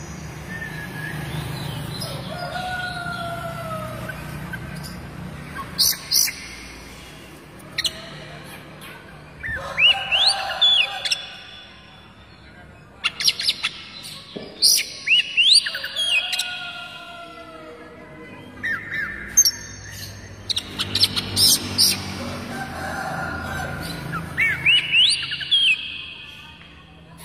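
Oriental magpie-robin (kacer) singing: bursts of sharp, rising whistled notes and quick chattering phrases, repeated every few seconds.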